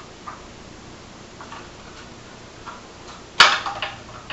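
A few faint light taps, then a single sharp click about three and a half seconds in, followed by a brief clatter: objects being handled on a kitchen counter.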